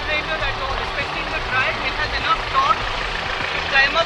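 Mahindra Scorpio's engine running at low speed as the SUV crawls up a steep dirt slope, under people's voices.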